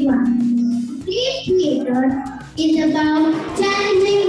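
A girl singing into a microphone, holding long notes that slide up and down in pitch.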